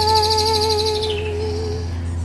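A woman's voice holds one long wordless sung note with a slight waver, fading out near the end, over a steady low musical drone. A bird trills rapidly and high above it during the first second.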